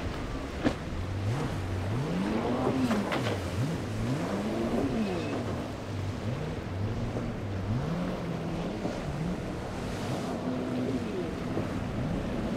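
Twin Mercury 200 outboard engines on a Beneteau cabin boat, revving up and down over and over as the boat rides the inlet waves, their pitch rising and falling every second or two. Under them is the rush of water off the hull and some wind.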